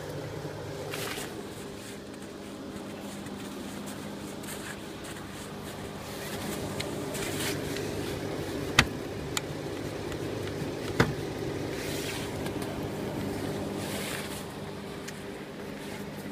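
An engine idling steadily, with two sharp metallic clicks about nine and eleven seconds in as the pins and latches of a snowplow mount are worked by hand.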